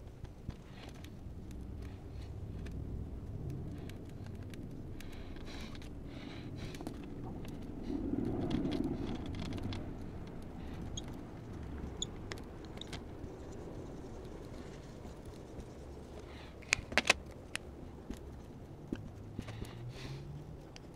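Felt-tip marker scratching in short strokes on a whiteboard as figures are drawn, over a low rustling, with a cluster of sharp taps of the marker near the end.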